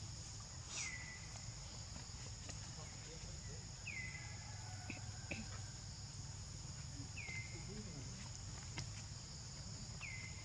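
Steady, high-pitched insect chorus, with a short falling whistle-like call repeated four times, about three seconds apart.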